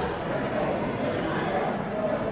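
Indistinct chatter of several voices, a steady murmur with no single speaker standing out.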